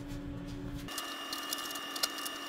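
A low steady hum gives way, about a second in, to a higher mechanical whine of a small motor-driven machine, with several steady tones and faint ticking.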